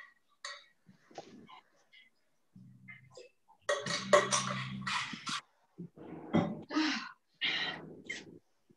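Indistinct voices heard over a video call, coming in short fragments that cut off abruptly into silence between them, loudest just past the middle.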